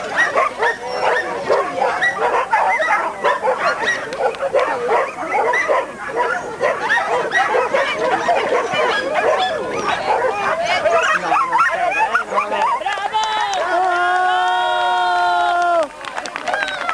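Border collie barking rapidly and repeatedly through an agility run, mixed with a person's shouted calls; near the end, a few long drawn-out calls, the last held for about two seconds.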